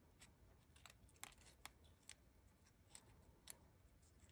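Faint, scattered crisp clicks and crackles of stiff craft-paper petals being pinched and rolled around a wooden dowel rod, against near silence.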